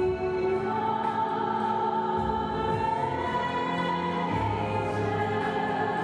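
Operatic singing with choral voices over sustained instrumental accompaniment, with a long held high note through the middle.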